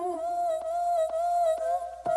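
Quiet breakdown in a dance-pop/house track: a single held, slightly wavering hum-like vocal or synth note, over faint ticks about twice a second.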